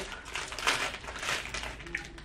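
Foil wrapper of a chocolate slab crinkling as it is unfolded and handled, in irregular rustles.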